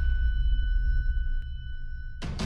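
Logo intro sound effect: steady high ringing tones held together over a low drone, with a faint click about one and a half seconds in.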